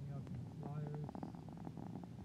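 Steady low engine and road drone inside a moving car, with faint voices talking over it.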